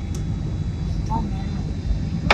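Steady low rumble of a Boeing 767's engines and airflow heard from inside the passenger cabin on final approach, with a thin steady whine above it.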